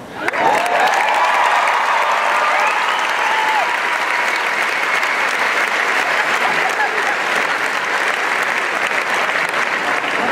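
Large audience applauding, starting suddenly just after the start and holding steady. Cheers and whoops rise over the clapping in the first few seconds.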